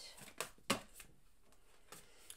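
Oracle cards being handled on a table: a few brief soft taps and rustles of the cards in the first second, then faint.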